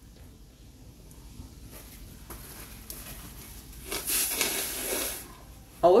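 A person blowing their nose into a tissue: one noisy blast lasting about a second, starting about four seconds in.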